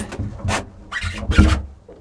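Several hollow knocks and thumps from a fiberglass boat deck and in-deck fish box as someone climbs out of the box. The heaviest thump comes about two-thirds of the way through, over a low background rumble.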